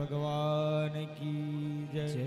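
A man singing one long, level devotional chant note into a microphone, with a short break about halfway through.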